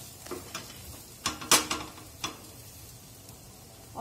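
Spatula scraping and tapping in a non-stick frying pan of cooked mutton mince, a handful of strokes in the first two and a half seconds with the loudest about a second and a half in. Under the strokes the mince sizzles faintly in the still-hot pan, the gas just turned off.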